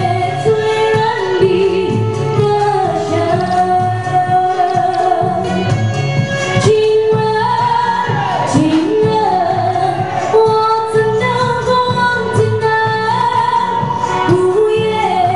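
A woman singing a Chinese pop song live into a handheld microphone over backing music with a steady beat, amplified through a PA system. Her melody moves in long held notes that slide between pitches.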